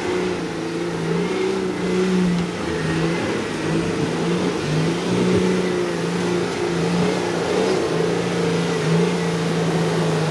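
Nissan 4x4's engine revving under load as it drives through deep mud ruts, the revs holding fairly steady with small rises and dips.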